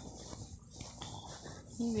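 English bulldog breathing close to the microphone, a low rough sound through its short muzzle.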